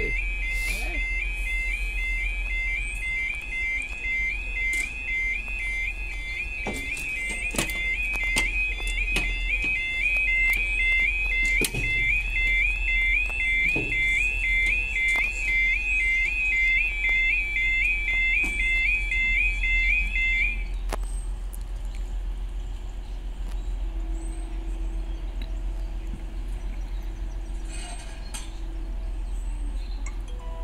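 British level-crossing yodel alarm sounding a rapid, repeating rising warble while the barriers come down. It cuts off suddenly about two-thirds of the way through, as it does once the barriers are fully lowered.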